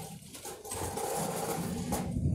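A steady low mechanical hum of running machinery, coming up about half a second in.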